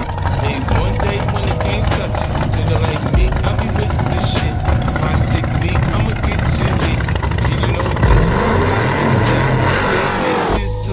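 Pro Mod drag car's 959-cubic-inch nitrous engine running as the car rolls forward toward its burnout, with the revs rising and falling near the end.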